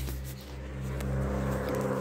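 Car engine idling with a steady low hum, heard from inside the cabin.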